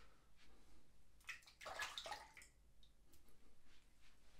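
A short rush of tap water lasting about a second, starting a little over a second in, as a disposable safety razor clogged with lather and hair is rinsed. Otherwise quiet.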